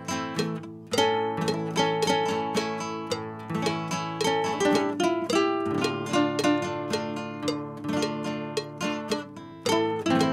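Three classical guitar parts layered together: a picked melody, a second harmony line and strummed chords with bass notes, in a steady rhythm.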